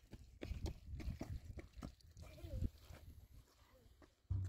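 Water glugging out of a plastic jerrycan in a quick run of uneven gulps, poured into a sand-and-cement mix, tapering off after about two and a half seconds. A short rising-and-falling vocal call sounds over it near the middle.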